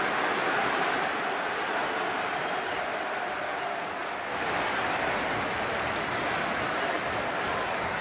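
Football stadium crowd noise from thousands of fans, a steady wash of sound that swells a little about four seconds in as the home side attacks.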